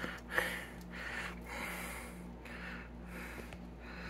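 Soft breathing close to the microphone, several quiet puffs through the nose, with a faint tap about a third of a second in.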